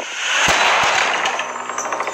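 A film sound effect: a loud burst of hissing noise that fades over about a second and a half, with a sharp knock about half a second in and a fainter one soon after.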